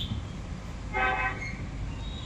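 A short horn toot about a second in, over steady low background noise, typical of a vehicle horn in street traffic.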